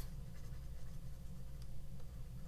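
Stylus writing on a tablet screen: a few faint light taps and scratches over a steady low hum.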